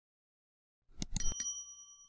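A subscribe-button animation sound effect. About a second in there is a quick run of mouse-style clicks, then a single bright bell ding that rings out for most of a second.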